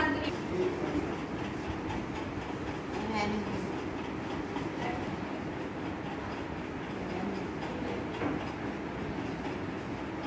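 Steady rumbling background noise, with faint voices heard briefly a few times.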